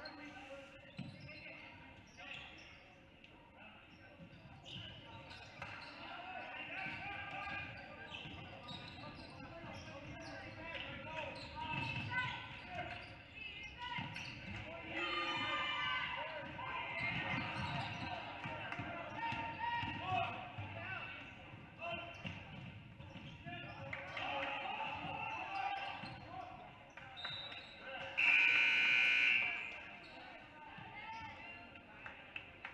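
Basketball dribbling on a hardwood gym floor, with voices echoing in the gym. Near the end comes a loud, steady blast lasting about a second and a half, a referee's whistle stopping play.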